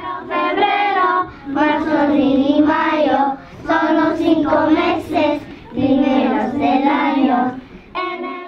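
A class of young children singing together, in four phrases with short breaks between them.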